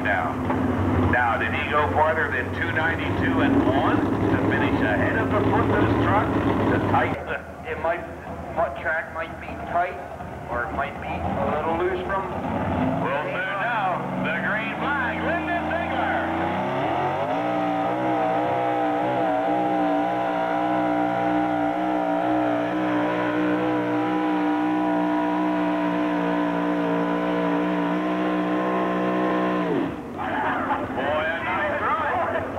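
Modified pulling truck's engine at full throttle. Its pitch climbs about sixteen seconds in, then holds high and steady with a slight waver as the truck pulls the sled. The opening seconds hold a louder, rougher engine noise that stops suddenly.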